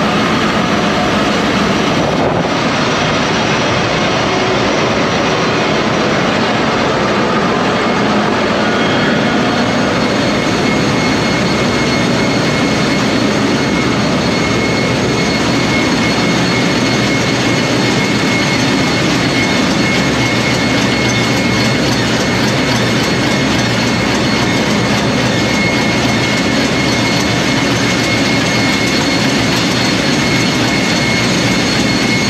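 Ship's engine room with its diesel engines running: a loud, steady mechanical din of humming and rattling, with a faint high whistle held throughout.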